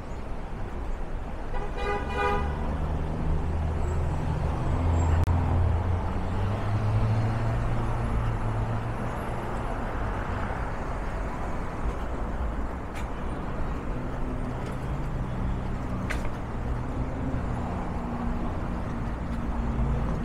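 City street traffic: vehicle engines running and tyres passing, with a short horn toot about two seconds in.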